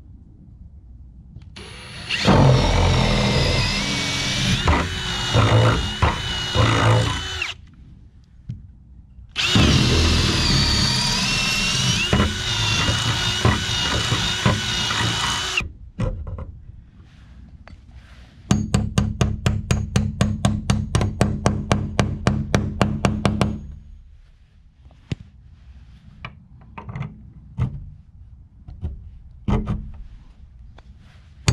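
Cordless drill boring through a steel strap hinge into the wooden door boards: two long runs of loud, steady motor whine under load, each about six seconds. Then a rapid, even clatter of about eight strokes a second for about five seconds, followed by scattered light taps and knocks.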